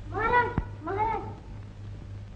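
Two short calls, about half a second apart, each rising and then falling in pitch, with a sharp click just after the first.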